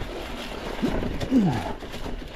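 A man grunting twice with effort, each grunt sliding down in pitch, over the noise of mountain-bike tyres rolling on dry leaves.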